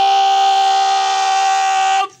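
A bugle holding one long, steady note, which cuts off suddenly at the end, as at a military funeral salute.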